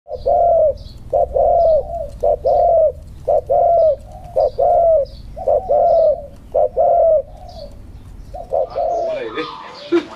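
A spotted dove cooing over and over in a steady rhythm, each phrase a short note followed by a longer, arched coo, about once a second.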